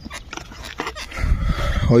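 Scattered clicks and knocks with a low rumble as a plastic water bottle is handled in an open scooter's under-seat storage compartment.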